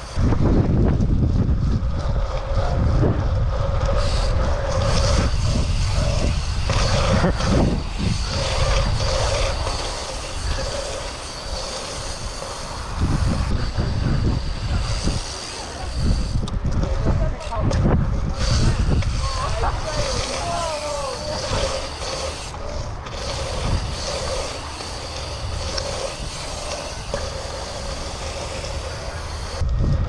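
Wind buffeting the microphone in loud, gusty rumbles as a BMX bike rolls fast over a wet asphalt track, with the tyres running on the surface underneath.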